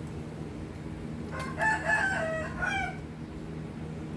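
A rooster crowing once, one call about a second and a half long starting just over a second in, over a steady low hum.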